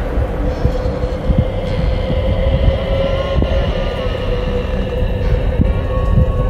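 Horror intro sound design: a deep rumble with irregular low pulses under a steady held drone tone.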